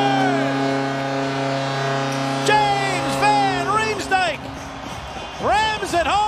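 Arena goal horn sounding a long steady chord for a home goal, which stops about four seconds in, over crowd noise. Goal music with singing comes in over it, with more singing near the end.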